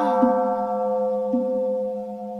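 A struck Buddhist bowl bell ringing on, its several clear tones fading slowly, over a low steady hum with a couple of soft low notes beneath.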